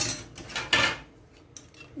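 Stand-mixer attachments being picked up and handled, with a few short clinks and a brief rattle in the first second.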